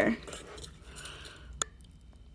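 A spoon stirring chopped salsa in a glass bowl: soft, faint wet squishing, then a single sharp click about a second and a half in.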